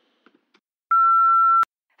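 Voicemail beep: a single steady electronic tone, under a second long, that cuts off abruptly, marking the start of a new recorded message.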